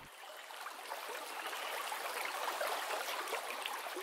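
Stream water running, a steady rush that grows a little louder toward the middle and eases off near the end.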